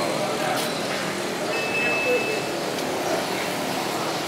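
Steady background din of a working fish market, with indistinct voices mixed into a continuous noise.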